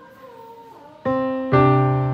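Music playback starting about a second in: two keyboard chords, the second louder, held and slowly fading.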